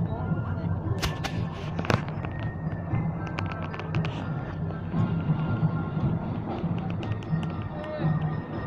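Outdoor parade music with steady low, droning tones, over crowd chatter. Sharp cracks come in a cluster about one to two seconds in and again around three to four seconds in.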